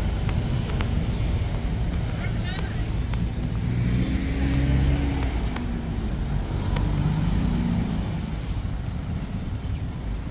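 Road traffic on a city street: cars and a motorcycle running and passing close by, a steady low rumble, with people's voices in the background.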